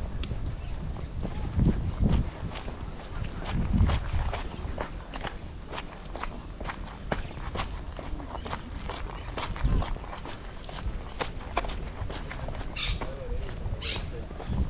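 Footsteps of someone walking on a dirt path at a steady pace, about two steps a second, with a few low rumbles early on. Near the end come two short high-pitched sounds.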